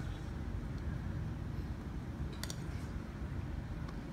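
Quiet room background with a steady low hum, and one brief faint click about two and a half seconds in.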